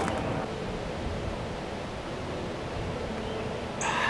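Steady outdoor background noise in woodland: an even, rushing hiss like a light breeze through the trees, with no distinct events.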